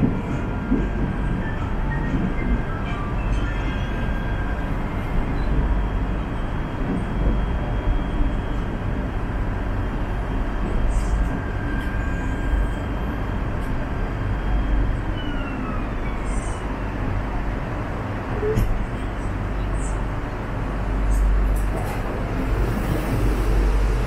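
Cabin running noise of a KTM Class 92 electric multiple unit under way: a steady low rumble of wheels on rail with a faint whine that falls in pitch about fifteen seconds in.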